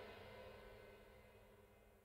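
The last chord of a discordant emotional-hardcore song ringing out and dying away, faint and fading to near silence about a second in.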